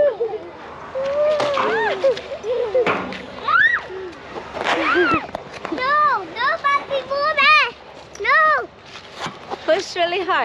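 A young child's wordless high-pitched squeals and sing-song calls, each rising and falling, with a quick run of them about six to eight seconds in.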